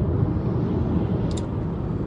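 Steady road and tyre noise with engine hum inside a moving car's cabin, mostly a low rumble.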